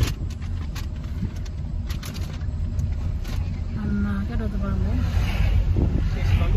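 Road noise inside a moving car's cabin: a steady low rumble with a few light knocks and rattles in the first few seconds. A voice is heard briefly about four seconds in.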